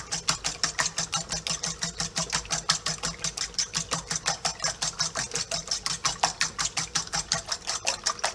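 Fork beating eggs in a stainless steel bowl: the tines click against the metal in a fast, even rhythm of about six strokes a second.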